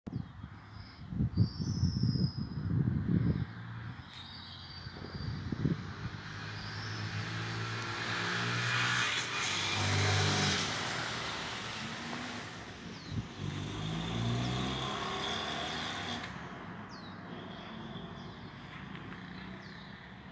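A car driving past on the street: its engine and tyre noise swell to a peak about halfway through and fade away, the engine note gliding up and down. Bursts of low rumble on the microphone near the start.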